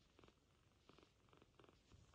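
Very faint purring of a kitten, coming in short, uneven pulses.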